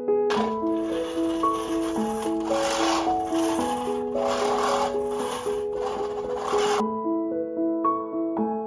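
A hand-pushed cylinder lawn mower cuts grass with a rasping whirr that swells and fades about once a second with each push. It stops abruptly about seven seconds in. Soft piano music plays underneath.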